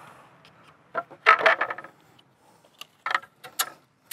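Measuring tools handled on a stone slab: a metal tape measure and an aluminium spirit level give a quick clatter of metallic clicks about a second in, then a few separate sharp clicks near the end.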